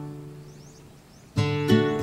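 Background music on acoustic guitar: a strummed chord rings and fades away over the first second or so, then a new strum starts about 1.4 s in.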